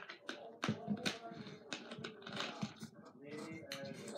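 Plastic soda bottle being handled and its screw cap twisted, a quick run of small clicks and crackles.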